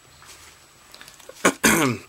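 A man clearing his throat once, a sudden loud rasp about one and a half seconds in, after a quiet stretch.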